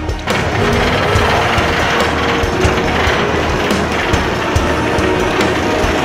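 Wooden roller coaster train running along its track: a steady, noisy rattle and rumble that sets in sharply about a quarter second in, over faint background music.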